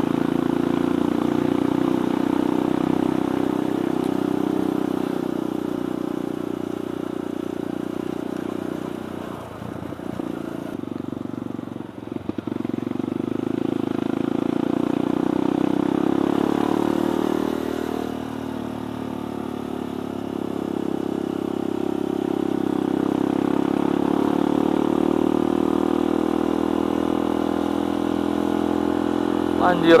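Kawasaki D-Tracker 150 SE's single-cylinder four-stroke engine running under way. Its note falls and rises a few times as the throttle is eased and opened again, with a short rough dip about ten seconds in.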